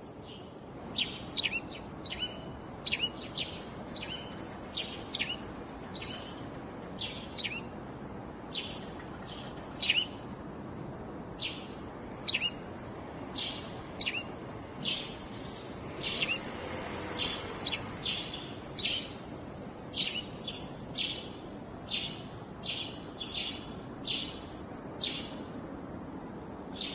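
A bird chirping over and over, with short high calls that slide downward in pitch, about one or two a second, over a faint steady hiss.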